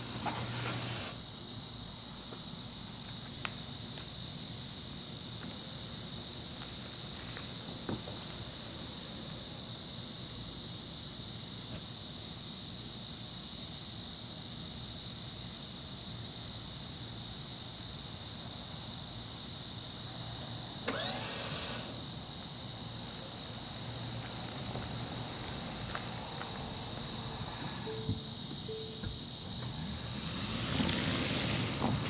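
Steady high-pitched chirring of night insects, with a faint even pulsing above it, and a few faint clicks scattered through.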